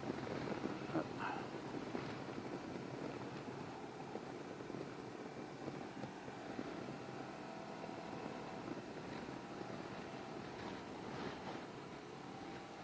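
Can-Am Ryker three-wheeled motorcycle running steadily at cruising speed, its engine hum mixed with road and wind noise.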